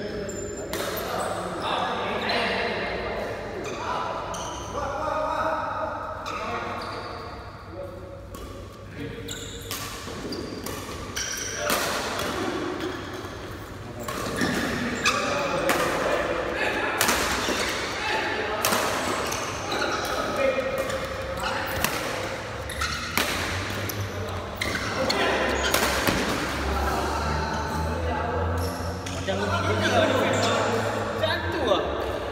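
A doubles badminton rally: rackets strike the shuttlecock in repeated sharp hits at irregular intervals, echoing in a large sports hall. Men's voices talk over the play.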